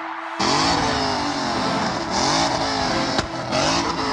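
A Ford Mustang's V8 revving hard over and over while spinning doughnuts, its pitch climbing and dropping about once a second, with a hiss of spinning tyres. It cuts in abruptly about half a second in.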